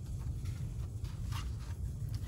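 A hardcover picture book's page being turned, a brief paper rustle about a second in, over a steady low hum.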